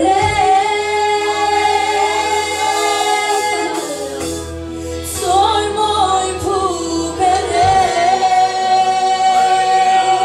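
Two women singing a gospel worship song into microphones, their voices amplified. A long note is held steady over the last few seconds.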